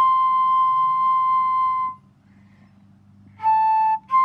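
Solo concert flute played unaccompanied, relayed over a Zoom call: one long held high note, a pause of about a second and a half, then a lower note near the end.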